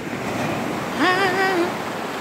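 Small waves breaking and washing up a sandy shore in a steady rush. About a second in, a person's voice gives a brief, held, slightly wavering call.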